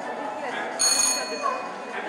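Show-jumping start signal: a short, steady, high electronic tone lasting about half a second, sounding about a second in, over voices in a large indoor hall.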